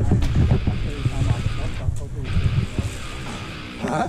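Mountain bike riding down a wet, muddy trail, heard from a helmet camera: a steady rumble of wind on the microphone and tyres on the ground, with a brief drop in the hiss about two seconds in.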